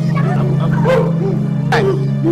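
A woman crying out in short repeated wailing sobs over steady background music.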